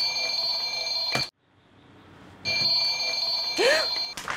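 Bedside alarm clock ringing with a steady high-pitched tone that breaks off for about a second in the middle and then starts again.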